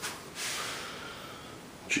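A person breathing in sharply through the nose, close to the microphone: a short hissing breath that tapers off, after a light click.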